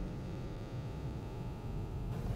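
Quiet room tone: a low steady hum with a faint hiss.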